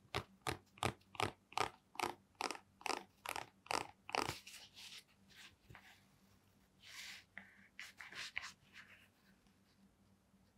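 Fingers scratching and rubbing the knit fabric wrist cuff of an adidas Predator goalkeeper glove: a quick even run of about eleven scratchy strokes lasting about four seconds, then a few softer rustles of the glove being handled.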